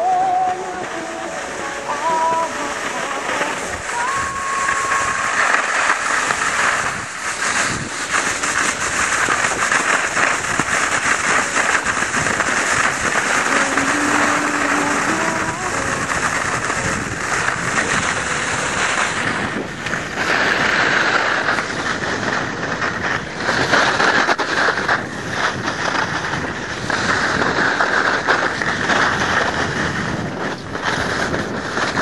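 Steady rushing scrape of a snowboard sliding over packed snow on a downhill run, with wind buffeting the microphone. The hiss surges and eases.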